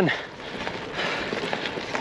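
Steady rolling hiss of a gravel bike riding along a gravel track, getting a little louder about a second in.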